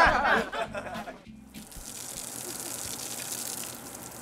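Music playing briefly, cutting off about a second and a half in, then a garden hose spraying water in a steady hiss.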